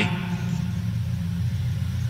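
Steady low rumble and hum of background noise with no speech, the room tone of a recorded speech between phrases.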